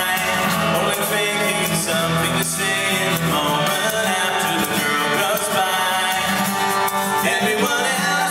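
Live acoustic guitar strumming with an egg shaker keeping time, and singing over it.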